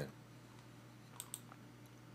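Two faint computer mouse clicks in quick succession, a little over a second in, over a low steady hum.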